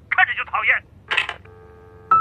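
A voice on the telephone line speaks a few quick words, then a short click, and from about three quarters of the way in a steady telephone line tone sounds in the handset: the other party has hung up.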